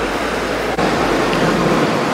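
Steady, even rushing noise of a city street, with a low hum underneath; it shifts slightly a little under a second in.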